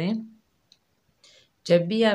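Speech that trails off, then a pause of about a second with one faint click, and then speech starting again near the end.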